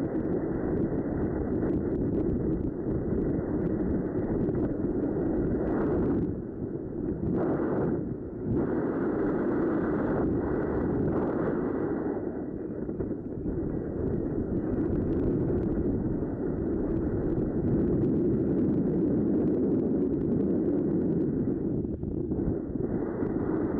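Wind buffeting the microphone: a steady, low rushing noise that drops briefly twice, about six and eight seconds in.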